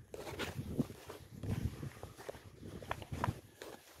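Footsteps on dry, dormant grass turf: a run of soft, irregular steps with a few light clicks.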